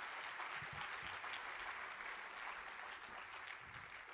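Audience applauding, a light, steady patter of many hands that slowly tails off toward the end.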